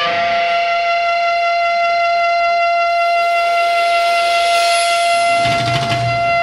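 Amplified electric guitar holding a steady, ringing sustained chord that drones without a beat, and a low swell comes in near the end.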